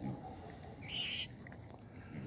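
A rat caught in a wire cage trap gives one short, high-pitched squeal about a second in.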